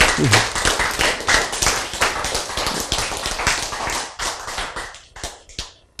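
Audience applause from a small group clapping, dying away about five seconds in.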